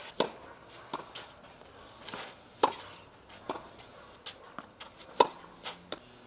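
Tennis rally on a clay court: sharp pops of a racket hitting the ball, the loudest roughly every two and a half seconds, with softer ball bounces and shoe scuffs on the clay in between.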